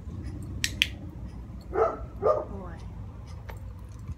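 A dog-training clicker clicking once, a quick double click of press and release, about half a second in. About a second later come two short pitched vocal sounds.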